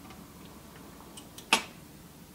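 Faint steady background of a record-player turntable spinning, with a couple of small ticks and one sharp click about one and a half seconds in.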